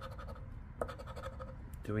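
A chip-shaped scratcher token scraping the silver coating off a scratch-off lottery ticket in a few short strokes.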